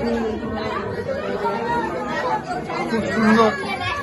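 Several people talking at once: overlapping chatter of a small gathering.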